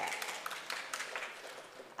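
Light, scattered applause from a congregation, fading away over the two seconds.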